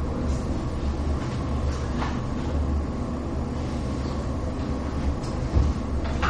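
Chalk tapping and scratching faintly on a blackboard over a steady low hum.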